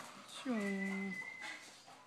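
A man's voice giving one drawn-out "choo" call that slides down in pitch and then holds, with a faint steady high tone alongside it.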